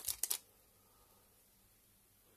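Brief handling noise: a few quick clicks and rustles in the first half-second, then quiet room tone.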